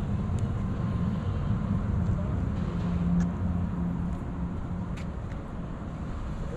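Steady low hum of motor traffic, swelling slightly about halfway through, with a few faint ticks.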